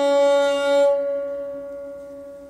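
A musical instrument holding one long, steady note that fades away. Its brighter upper overtones drop out about a second in, leaving a softer tone.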